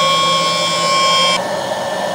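Princess hot-air popcorn maker running with kernels inside, its fan blowing hot air with a steady high whine. About a second and a half in, the whine drops away and a steadier blowing sound remains. The machine has just been switched on, and no kernels have popped yet.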